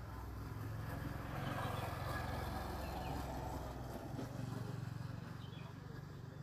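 Outdoor background noise over a low hum, swelling for a few seconds in the middle and easing off, with a short bird chirp near the end.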